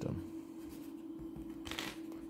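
A pen scratching briefly on paper on a clipboard, one short stroke near the end, over a quiet steady hum.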